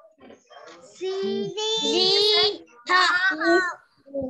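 A child's high voice in long, drawn-out sung tones: one held phrase about a second in, then a shorter one near the end, heard through video-call audio.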